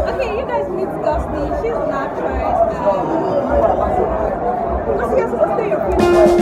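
Lively crowd chatter in a packed hall: voices talking and exclaiming close by over a dense background babble.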